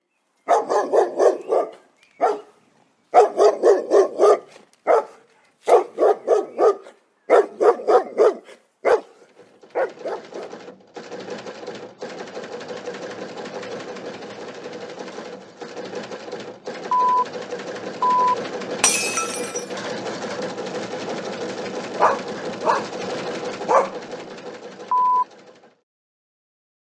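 A dog barking repeatedly, in short loud barks in clusters over the first nine seconds or so. After that comes a quieter steady hiss with a few short beeps and clicks, which fades out near the end.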